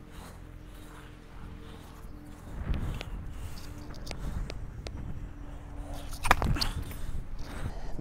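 A tennis serve on a hard court: a few faint taps as the ball is bounced, then one sharp, loud crack of the racket striking the ball a little past six seconds in.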